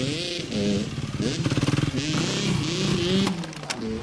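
Dirt bike engine revving in first gear, its pitch rising and falling as the throttle is worked. Near the end the revs drop and there are a couple of sharp knocks as the bike hits the dirt jump.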